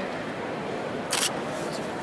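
A single camera shutter click about a second in, over the steady ambience and background chatter of a large, echoing hall.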